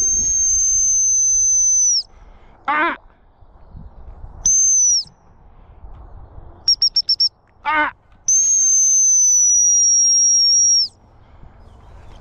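Gundog training whistle: one long, steady, high blast that ends about two seconds in, a short blast near the middle, a quick run of about five short pips, then another long blast of about two and a half seconds. The long blasts are stop whistles to halt and sit the spaniel out on a retrieve. Two brief shouted calls fall between the whistles.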